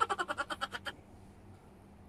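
A person's voice making a quick run of rapid pulsed sounds, about ten a second, that stops about a second in and is followed by quiet room tone.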